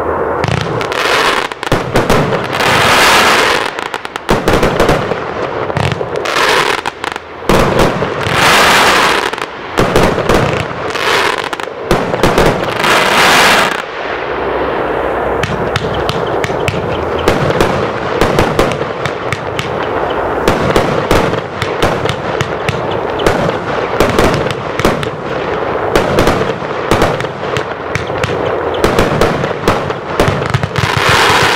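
Consumer compound firework battery (the VuurwerkTotal Partyraiser) firing continuously, shot after shot launching and bursting overhead. The first half holds several longer, louder bursts; from about halfway on the shots come in a quicker, denser run.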